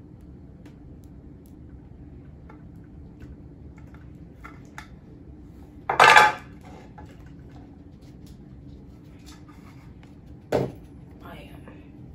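Metal kitchen knife knocking and scraping against a wire cooling rack and metal baking tray as honeycomb is cut: light clicks throughout, a loud clatter about six seconds in and a shorter one about ten seconds in.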